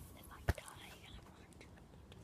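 A single sharp knock about half a second in, from the handheld phone being moved, then faint whispering.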